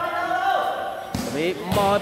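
A volleyball struck by hand once about a second in, a single sharp slap, under a man's drawn-out commentary.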